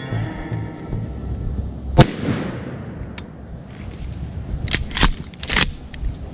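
A single shotgun blast from a Remington 870 pump-action about two seconds in, a sharp crack with a trailing echo. Several smaller sharp clicks and knocks follow. Background music fades out at the start.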